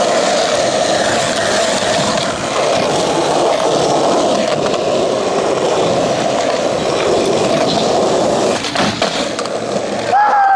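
Skateboard wheels rolling steadily over a concrete skatepark surface, with a few sharp knocks about nine seconds in.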